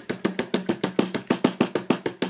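Hair stacker being tapped quickly and repeatedly on the bench to even up the tips of a bunch of deer hair, about eight sharp taps a second.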